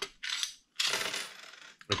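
Coins clinking and rattling in a small coin-operated M&M dispenser: a short clink near the start, then about a second of steady metallic jingling.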